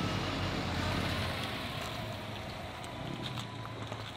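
Nissan Altima sedan's engine running as the car pulls out of a driveway, the sound easing off slightly as it moves away.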